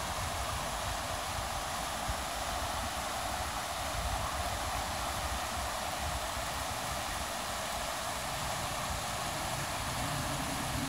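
Creek water rushing over a shallow rocky riffle: a steady hiss of white water.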